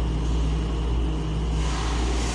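Steady low mechanical rumble with a hum under it. A rush of hiss swells in near the end.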